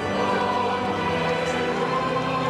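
Choral music with long held chords.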